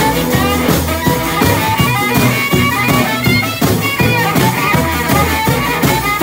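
A blues band playing live: a harmonica cupped against a microphone plays the lead, over electric guitar, plucked upright double bass and a drum kit keeping a steady beat.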